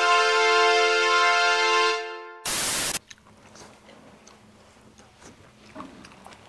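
Edited-in sound effects: a steady electronic chord held for about two seconds, like a phone alert tone, then a loud half-second burst of static, followed by faint room sound with small clicks.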